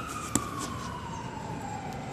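A siren wailing slowly: one tone gliding steadily down in pitch and just turning to rise again at the end. A single sharp click sounds about a third of a second in.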